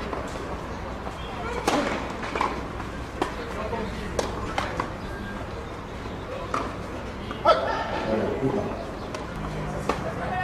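Indistinct voices of people around a tennis court between points, with a few sharp knocks; the loudest comes about two-thirds of the way through.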